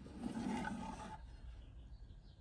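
A small drawer slid out of a wooden cabinet: a rough sliding sound about a second long that fades out.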